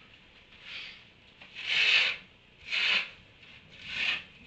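Repeated rasping, swishing strokes, about one a second, each growing louder than the last.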